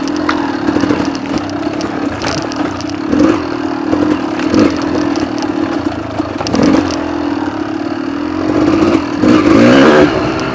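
Kawasaki KDX200 two-stroke single-cylinder dirt bike engine running at a steady low throttle, with clattering knocks as the bike jolts over the trail; the revs rise and the engine gets louder near the end.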